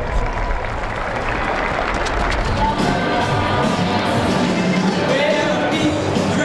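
Stadium crowd noise and cheering, with music and singing coming in about halfway through.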